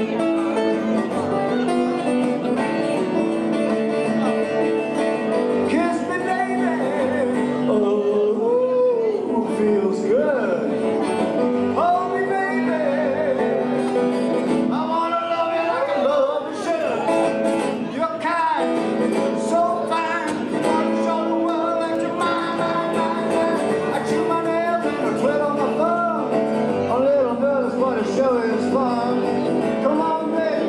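Live country band playing, with guitar and a singer whose voice comes in about six seconds in over the steady accompaniment.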